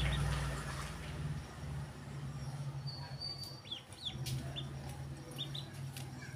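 Ducklings peeping: several short, high peeps, some falling in pitch, from about three seconds in. Under them runs a steady low hum, loudest in the first second and a half.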